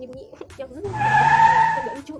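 A car's tyres screeching for about a second, starting about a second in and louder than the voice.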